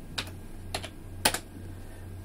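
Computer keyboard keys clicking a few separate times as a layer name is typed, the loudest click a little past the middle.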